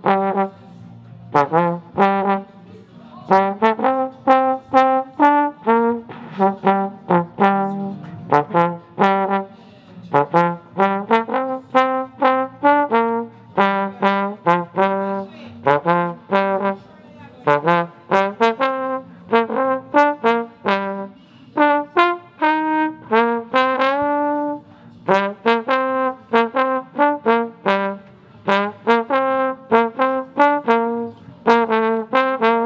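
Solo trombone playing a melody in mostly short, separated notes grouped into phrases with brief pauses between them, with a few longer held notes near the middle.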